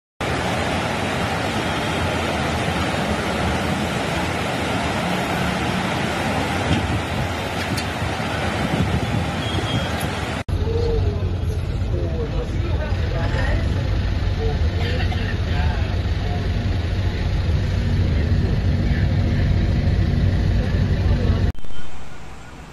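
A steady rushing noise fills the first half. It then cuts to the low, steady rumble of a bus engine heard from inside the cabin as the bus drives through floodwater, with people talking over it.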